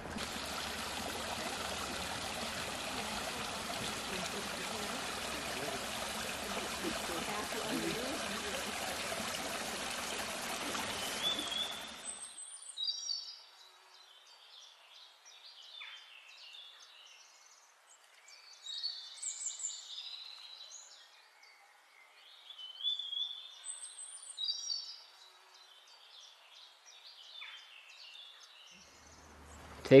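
A small mountain stream flowing steadily, cut off suddenly about twelve seconds in. After that comes a quiet forest with birds chirping now and then.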